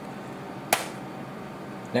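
A single sharp click about halfway through, as a small plastic bottle is set down on the workbench, over a steady low room hum.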